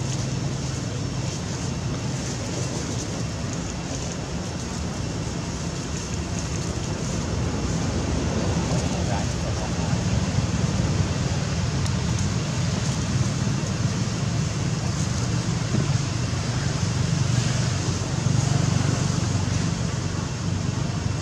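Steady outdoor background noise: a continuous low rumble with hiss above it, unchanging throughout.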